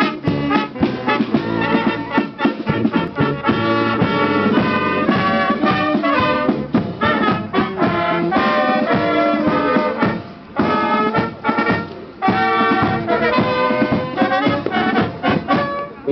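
A small brass band playing a tune live, trumpets and lower brass together, with short breaks between phrases about ten and twelve seconds in.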